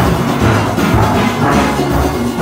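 Nine-bass steel pans struck with mallets close up, playing a quick run of deep, booming notes in a steady rhythm.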